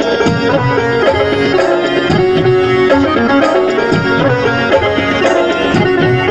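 Rajasthani folk music: a dholak drum beats a steady rhythm under a melody of long held notes that step up and down in pitch.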